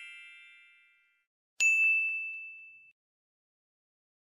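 Chime sound effects for an animated intro: the ring of one ding dies away in the first second, then a second bright ding strikes about one and a half seconds in and rings out for just over a second. Silence follows.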